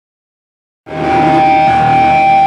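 Silence, then a bit under a second in a live rock band with electric guitars cuts in abruptly and loud, with long sustained guitar notes ringing over it.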